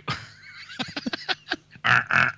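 A person laughing: a run of quick, breathy chuckles.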